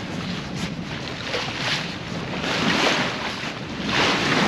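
Wind buffeting the microphone over the rush of sea water along the hull of a small sailboat under way, swelling a little louder about two and a half seconds in.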